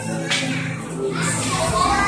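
Children's voices and chatter in a large room over background music; a deep bass comes in near the end.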